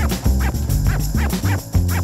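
Upbeat television theme music with a heavy bass line and a quick, driving beat.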